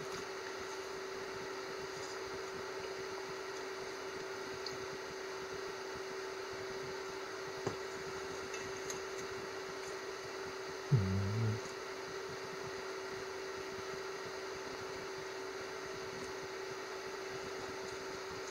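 Steady low background hum with one faint constant tone. About eleven seconds in there is a short, low 'mm' from the person eating.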